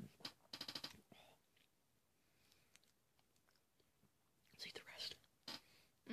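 Mouth sounds of someone chewing a chocolate peanut butter egg with closed lips: a quick run of wet clicks in the first second and a few breathy smacks about five seconds in, near silence between.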